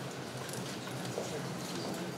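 A few light footsteps knocking on a hardwood floor, over a steady room hum.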